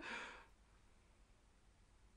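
A person's short breathy exhale trailing off the end of a laugh in the first half second, then near silence.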